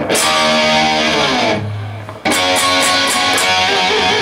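Electric guitar strumming chords: a chord struck and left to ring, a short low note, then a second chord struck a little after two seconds in with several quick strums, ringing on.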